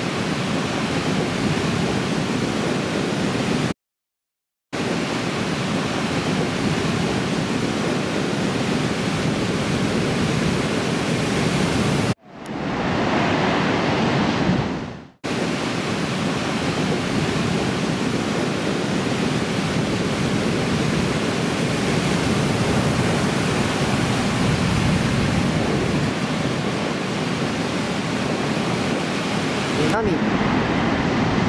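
Steady noise of breaking ocean surf and whitewater. It drops to dead silence for about a second a few seconds in, and a short stretch in the middle fades in and out.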